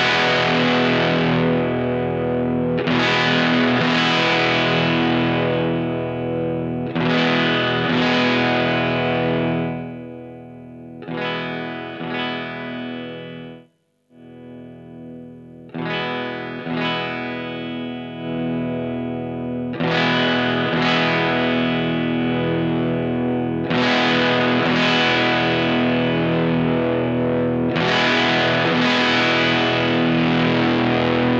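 Electric guitar chords from a Telecaster strummed and left ringing through a Vox AC4 EL84 tube amp modded toward a Marshall Class 5 circuit, heard through a cab simulator, with a new chord every few seconds. The amp's gain knob is being swept through its range: the distortion and level sag around the middle, cut out almost completely for a moment about fourteen seconds in, then come back as loud, distorted chords.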